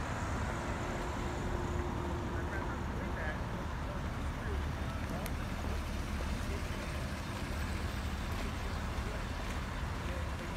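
Steady low rumble of idling police vehicles, with a short steady hum near the start and faint distant voices.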